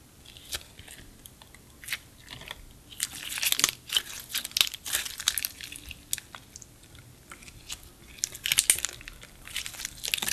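Clear slime being stretched, folded and squeezed by hand, giving many small crackles and pops, thickest about three to five seconds in and again near nine seconds, with scattered single clicks between.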